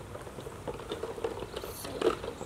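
Faint small clicks and rustles of hands handling the fittings on a Kobalt air compressor that is not yet running, with a brief rustle near the end.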